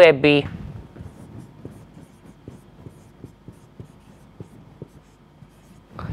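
Marker pen writing on a whiteboard: a run of faint, short, irregular strokes starting about a second in and stopping just before the end.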